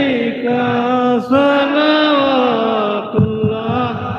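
A man chanting devotional Urdu verse (a naat) in long, drawn-out held notes that bend slowly in pitch, with short breaths about a second in and again after three seconds.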